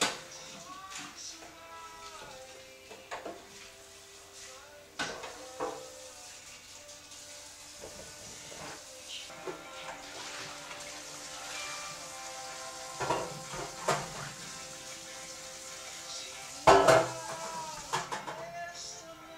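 Metal kitchen pans and bowls clattering and knocking as they are handled and set down on a counter, in several separate clanks with the loudest about a second before the end.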